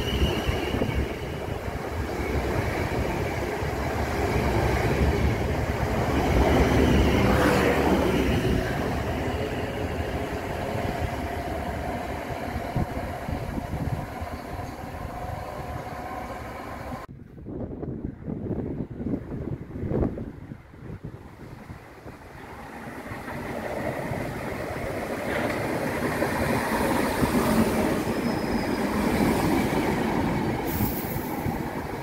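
A South Western Railway electric multiple unit runs along the platform with a steady rumble of wheels on rail, loudest about seven seconds in, then fading. After a sudden break with a couple of knocks, a Southern electric multiple unit approaches and draws alongside, its running noise building towards the end.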